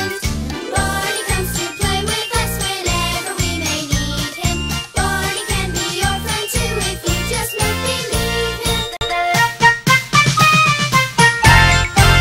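Upbeat instrumental children's TV opening theme music with a steady, bouncing bass beat. From about nine seconds in, the bass pulse drops away and bright twinkling chime-like tones take over as the theme winds up.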